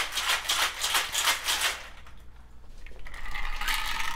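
Rapid rattling for about two seconds that fades away, followed by a steadier ringing tone building from about three seconds in.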